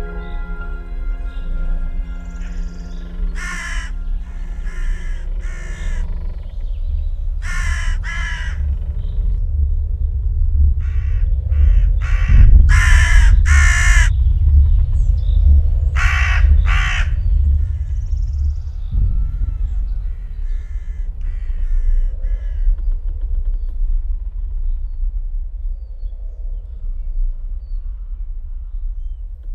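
Crows cawing repeatedly, in groups of two or three harsh caws spread over the first two-thirds, over a steady deep rumbling drone. A soft musical tone fades out at the very start.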